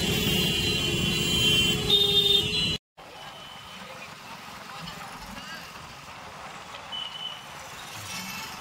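City traffic heard from a motorcycle: engines running with several vehicle horns honking. About three seconds in it cuts off suddenly and gives way to quieter, steady street traffic noise.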